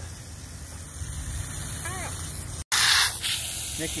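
Garden hose spray nozzle spraying water, a steady hiss. Just after a break about two-thirds of the way through, a louder burst of hiss lasts about half a second.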